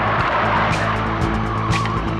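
A Pontiac Firebird Trans Am pulling away hard with tyres skidding on the road. Music with a steady beat plays under it.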